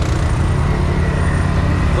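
ATV engines running steadily close to the microphone, a low, even rumble.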